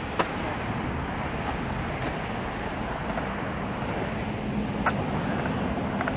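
Skateboard wheels rolling on a concrete bowl, a steady rumble, with two sharp clacks of the board, one just after the start and one about five seconds in.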